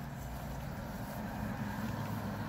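Steady low rumble inside a parked car's cabin, like the car's engine idling, with no sharp sounds.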